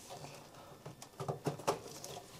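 A few faint, short plastic clicks and handling noises as the 24-pin ATX power connector is worked loose from a PC motherboard.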